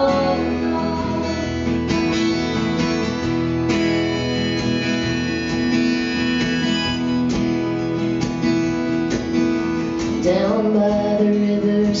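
Live acoustic music: two acoustic guitars strummed through an instrumental passage, with sustained chords ringing under the strums. A woman's singing voice comes back in near the end.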